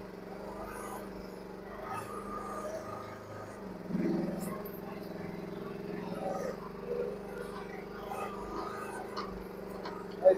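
Mini excavator engine running steadily as the bucket works into brush and small trees, working harder and louder for a moment about four seconds in, with a few faint cracks.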